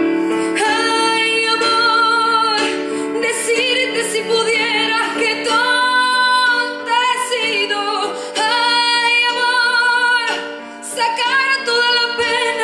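A woman singing live into a microphone, long held notes with vibrato, over sustained instrumental accompaniment. Her phrases break off briefly a few times, with a short dip in the music a little before the end.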